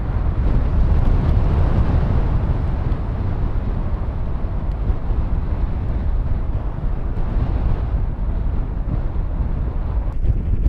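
Strong ground-blizzard wind buffeting the camera microphone: a loud, steady low rumble with a hiss of wind over it.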